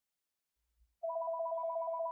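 A telephone ringing: one electronic two-tone trilling ring that starts about a second in and lasts just over a second.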